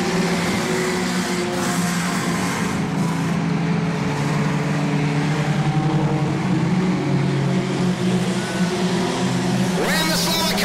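Engines of several small hatchback junior sedan speedway cars running at racing speed together as a pack, their overlapping notes rising and falling slightly.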